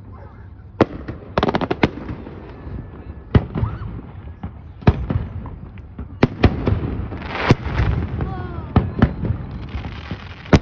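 Fireworks display: aerial shells bursting with sharp bangs about once a second, a quick string of cracks about a second and a half in, and a rush of hiss about three quarters of the way through.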